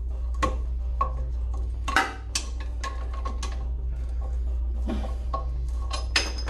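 Pliers working at a rusted, ground-off toilet-seat bolt in a porcelain bowl: a scatter of small metallic clicks and knocks, the sharpest about two seconds in, over a steady low hum.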